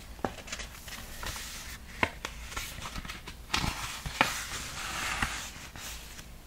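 Pages of a paperback picture book being handled and turned: scattered soft taps and clicks, with a longer rustle of paper in the second half as the pages are flipped.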